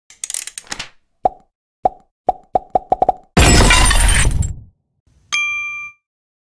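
Logo-intro sound effects. A quick flurry of clicks is followed by a run of pops that come faster and faster, then a loud noisy burst about three and a half seconds in. Near the end a bright chime rings out and fades.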